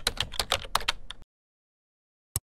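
Computer keyboard typing sound effect: quick key clicks at about eight a second that stop a little over a second in.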